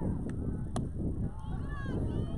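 Wind rumbling on the microphone at an outdoor softball game, with players and spectators calling out in high voices, and a single sharp crack about three-quarters of a second in.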